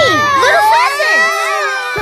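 Several high cartoon voices crying out together in one long, overlapping shout, their pitches sliding up and down, breaking off near the end.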